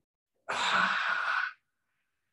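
A man's forceful breath out through the mouth, one breathy rush of about a second. It is the exhale of an isometric qigong exercise, made while he tenses his hands and abs.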